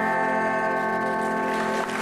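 Live rock band holding a sustained chord on amplified electric guitars, ringing steadily, then breaking off just before the end.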